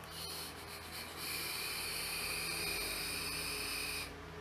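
A long draw on a Smok TFV12 Prince sub-ohm tank with its airflow fully open, heard as a steady airy hiss of air pulled through the tank and coil. It starts about a second in after a few faint clicks and cuts off sharply at the end.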